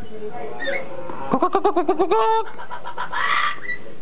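Caged amazon parrot calling without words. It gives a few short chirps, then about a second in a fast stuttering run of rising notes that ends in a short held note, and a raspy screech near the end.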